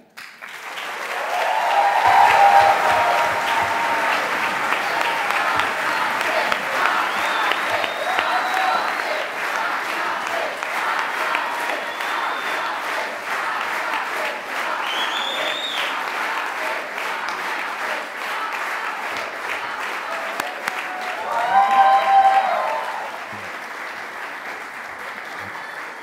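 A large audience applauding, with voices calling out over the clapping about two seconds in and again near the end. The applause tapers off in the last few seconds.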